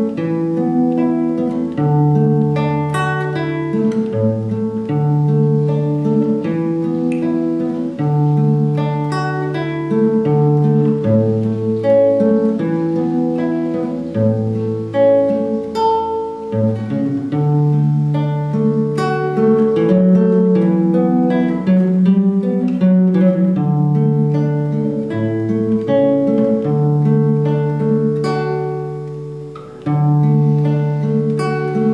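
Classical guitar fingerpicked in an arpeggio: a bass note on each chord held under a steady run of higher single notes, moving through C, D and G chords. The playing dips briefly near the end before the next line starts.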